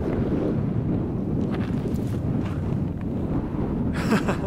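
Wind buffeting the microphone: a steady low rush of noise, with a few faint ticks in the middle.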